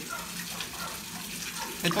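Pond water splashing and trickling steadily as a fish is handled in a wet hand over a net and released back into the water.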